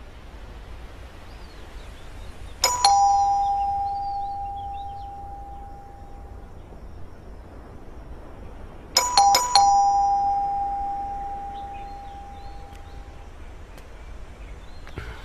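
Doorbell chiming ding-dong, a higher tone then a lower one that rings out slowly. It rings again about six seconds later with several quick presses before the last tone fades.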